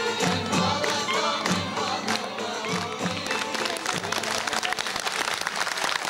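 A live band with singing plays the closing bars of a song. About halfway through, studio audience applause and cheering swell up over the music as it ends.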